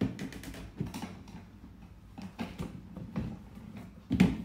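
Irregular small clicks, taps and rustles of hands working the string tied on a large gift box, in short bursts spaced unevenly.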